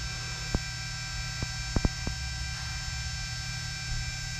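Steady electrical hum, with five light clicks in the first two seconds or so.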